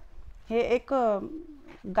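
A bird cooing twice, each call sliding down in pitch.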